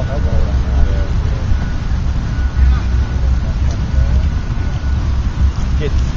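Wind buffeting the microphone in a steady low rumble, with faint voices of people on the field.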